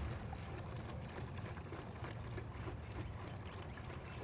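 Wind rumbling on the microphone, with faint steady outdoor background hiss.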